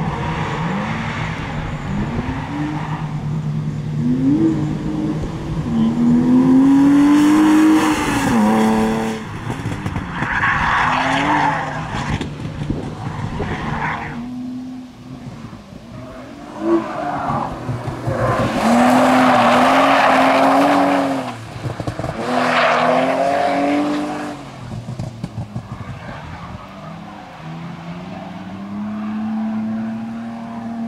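BMW E36 engine revving up and down over and over as the car slides sideways through the corners. The tyres squeal loudly in several long stretches, loudest twice: a few seconds in and again past the middle.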